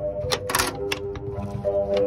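Background music with steady notes, over which a few sharp metal clicks sound in the first second as a small metal latch on a coop door is worked by hand.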